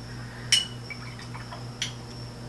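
Two light clinks of a hard object, the first about half a second in with a brief ring, the second fainter near the end, over a steady low electrical hum.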